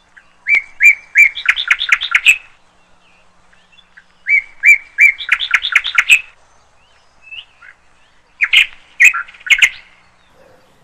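A bird singing the same loud song three times, about every four seconds. Each song opens with a few evenly spaced notes and ends in a quick run of notes; the last is shorter.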